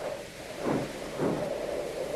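Sound effect of a strong wind blowing: a steady rushing noise.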